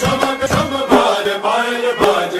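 Recorded song with a singing voice over instrumental backing, played through the stage loudspeakers as the track for a dance.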